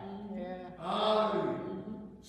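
A man preaching in a drawn-out, sing-song, chant-like voice, in two held phrases.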